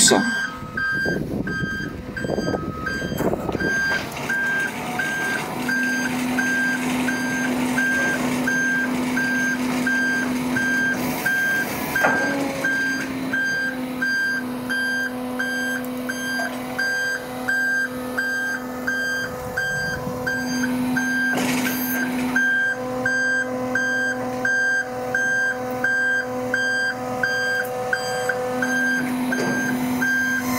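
A hook-lift skip loader's warning beeper sounds in an even series of short beeps, a little more than one a second, over the steady hum of the hydraulic pump. The hum starts a few seconds in and stops briefly now and then as the arm pulls the tipper skip back onto the truck.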